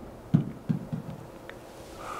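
A few soft low thuds coming closer together, then a faint click, in a quiet room.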